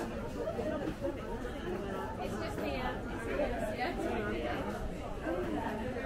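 Indistinct chatter of several people talking at once around market stalls, no single voice standing out.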